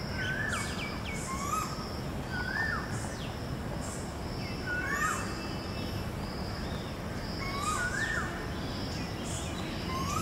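Birds calling over a steady background hum of outdoor noise. One bird repeats a short call that rises and then drops, about every two and a half seconds. Higher, thinner chirps come in between.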